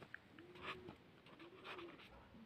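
Faint, low bird cooing, two rounded calls that rise and fall, with light scratching of a pen writing on paper.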